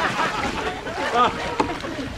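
Several people's voices overlapping in excited, indistinct chatter over a steady rush of water and wind noise.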